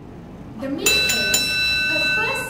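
A bell sound effect: a few quick dings about a second in, then a clear ringing tone that holds, over a voice.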